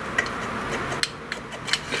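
A small dust-boot mounting piece being handled and slid into an aluminium extrusion: a handful of light, irregular clicks and rubs over a steady hiss.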